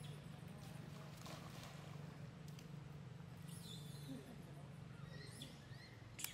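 Faint, high-pitched squealing calls of macaques, a few short squeals in the second half, over a low steady hum.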